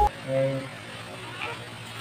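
A short vocal sound from a person, a single brief syllable about half a second long near the start, then low background noise.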